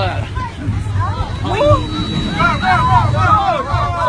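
Many passengers' voices talking and calling out at once in an airliner cabin, high and agitated, over a steady low rumble.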